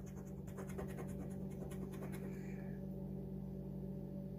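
Metal bottle opener scraping the coating off a paper scratch-off lottery ticket in a quick run of short strokes that fade out after about two seconds. A steady low hum runs underneath.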